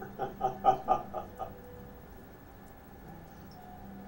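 A person laughing: a quick run of about six short bursts lasting about a second and a half.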